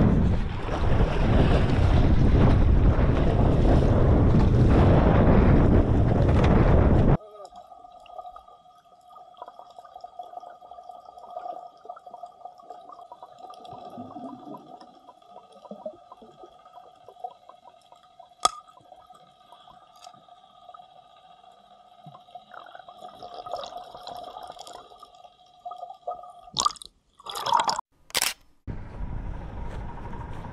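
Wind buffeting the microphone on an open boat at sea, which cuts off abruptly about seven seconds in. Muffled underwater sound follows, with faint steady hums and a few sharp clicks, and then several loud brief bursts near the end.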